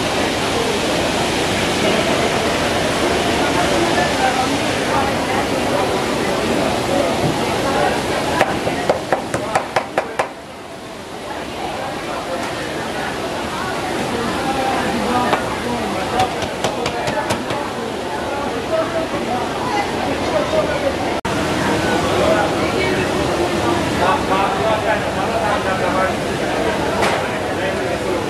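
Deep oil in a huge frying pan sizzling and bubbling steadily as fish fries. About eight seconds in comes a quick run of sharp clicks. After that the sizzle gives way to background voices and the rustle and knocking of fish pieces being shaken and tossed in flour.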